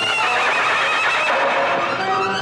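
Horse whinnying: one long, quavering call that starts high and slides lower over about two seconds.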